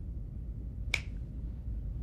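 A single sharp click about a second in, over a low steady background hum.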